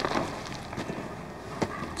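Fading noisy rumble with a couple of faint knocks: the tail end of an explosive breaching charge, as dust and debris settle after a hole has been blown in a mud wall.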